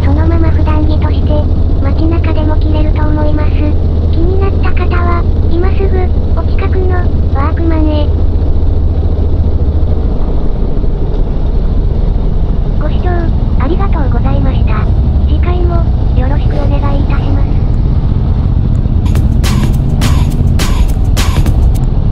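Motorcycle ride from a helmet camera: a steady low engine and wind rumble that eases about ten seconds in, with an indistinct voice in stretches over it. A run of sharp knocks near the end.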